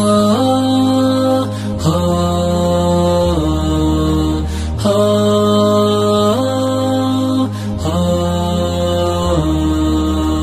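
Wordless music of an Arabic Ramadan nasheed: held, layered chords that change about every second and a half over a steady low drone.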